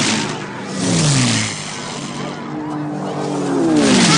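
Low-flying WWII propeller fighter planes passing overhead, twice, the engine pitch falling as each one goes by; the second pass is the louder, near the end.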